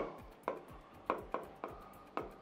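Marker pen writing on a board: four short scratchy strokes with short gaps between them, faint.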